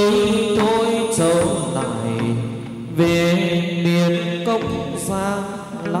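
Chầu văn ritual singing: a voice holds long, ornamented, wavering notes over plucked-string and percussion accompaniment, with sharp strokes about a second, three seconds and five seconds in.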